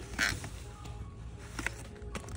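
Faint background music under a short, sharp squeak-like rasp a fraction of a second in, with a few light clicks later, as plastic-wrapped paper plates are handled in a store display.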